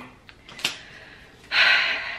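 A light click, then about a second and a half in a woman's loud, breathy sigh that fades away.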